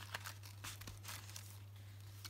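Faint rustling and light ticks of card and paper being handled as the fold-out panels of a handmade paper album are folded shut, over a low steady hum.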